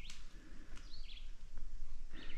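A wild songbird in the woodland giving short whistled calls that fall in pitch, one about a second in, over faint outdoor background noise.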